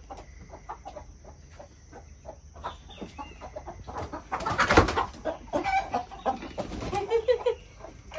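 Chickens clucking, then, a little before halfway, a loud flurry of flapping wings and squawks as a bird escapes being grabbed, followed by several alarmed squawks.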